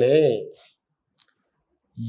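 A man's voice, lecturing in Kannada, trails off in the first half second, then dead silence broken by one faint, short click a little over a second in.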